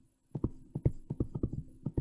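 Stylus clicking on a tablet as a word is handwritten: a quick, uneven run of a dozen or more small sharp clicks, starting about a third of a second in.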